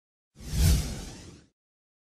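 A whoosh sound effect marking a title-card transition: one swell starting about a third of a second in, with a deep rumble under a hiss, peaking quickly and fading out by about a second and a half.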